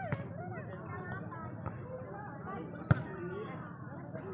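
Volleyball being struck during a rally, a few sharp smacks with the loudest about three seconds in, over spectators' scattered chatter and calls.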